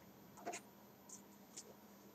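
Near silence: room tone with a low steady hum and a few faint, short clicks or scrapes.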